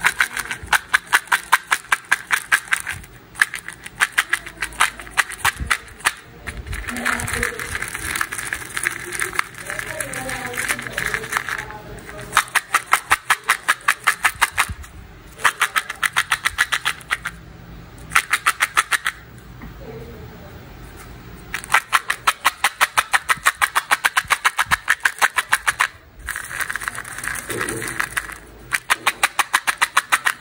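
Candy-coated chocolate lentils rattling in a plastic cup shaken by hand, a fast even clatter in runs of a few seconds with short pauses between.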